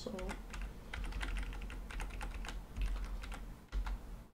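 Computer keyboard keys being tapped in a quick, irregular run of clicks.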